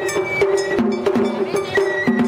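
Japanese festival hayashi music: a metal hand gong struck in a quick steady beat, about three strikes a second, with drums and a high flute line held over it.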